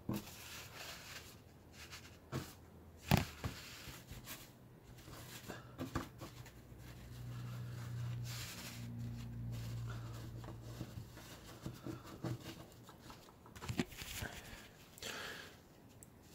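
Faint handling noises at a workbench as a glued clay tile is set down on tissue: scattered small clicks and soft rustles, with a low steady hum from about four to twelve seconds in.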